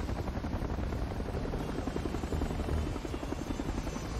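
Helicopter hovering close by, its rotor blades beating fast and evenly.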